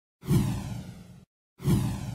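Two whoosh sound effects from an animated title sequence, one about a second long and a second beginning near the end. Each starts suddenly with a low thud, then fades with a falling swish before cutting off.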